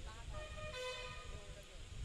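Faint outdoor background rumble, with a few short, distant pitched tones between about a quarter of a second and a second and a quarter in.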